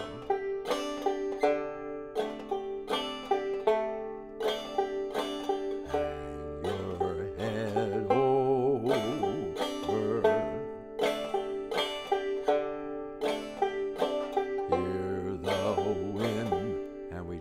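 Five-string banjo strummed in a slow three-quarter-time 'bump-ditty' pattern on a D7 chord, evenly spaced strokes throughout.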